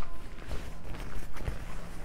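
Church bells of Stockholm's German Church (Tyska kyrkan) ringing, heard as faint held tones, with a few footsteps on cobblestones.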